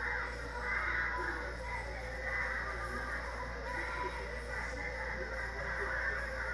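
Music with voices, played back from an old home video through a screen's speaker, thin and lacking bass, over a steady low hum.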